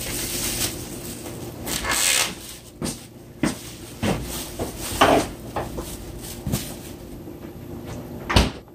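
Plastic meat packaging and paper rustling and crinkling as a package of pork chops is opened and handled. It comes in bursts, the longest about two seconds in, with a few short sharp knocks and clicks of things set down on the table, the loudest about five seconds in.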